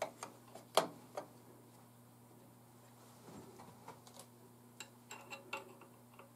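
Light metallic clicks and taps of a small wrench working the SVT-40's gas regulator while it is turned to line up a setting mark: three sharper clicks in the first second and a half, then a scatter of fainter ticks, over a faint steady hum.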